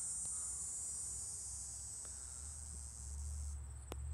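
Faint, steady high-pitched trilling of insects in the garden, turning to an even pulsing near the end, with a low rumble on the microphone in the last second.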